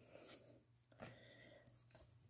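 Near silence, with a couple of faint soft ticks of trading cards being slid and shuffled in the hands, about a quarter second and a second in.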